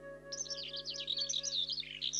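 Birds chirping in a quick, dense run of short high chirps starting about a third of a second in, over a held music chord that thins out partway through.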